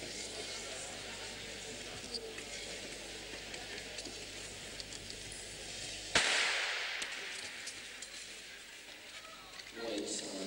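Starter's pistol fired once about six seconds in, a sharp crack that echoes around the ice rink hall and dies away over about a second, over a murmur of spectators' voices.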